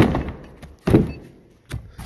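Two dull thuds about a second apart, with a fainter knock near the end, as cardboard boxes of lift-kit suspension parts are handled and set down.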